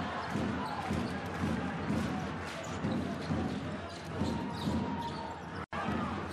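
A basketball being bounced on a hardwood court, with repeated bounces roughly every half second, over steady arena crowd noise.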